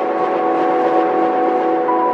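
News channel intro sting: a loud, sustained synthesized chord of several held tones over a rushing whoosh, timed to the logo animation.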